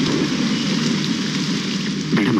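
Steady heavy rain falling, an even hiss, with a low murmur beneath it.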